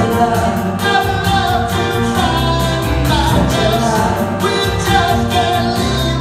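Three women singing together live, with backing music keeping a steady beat.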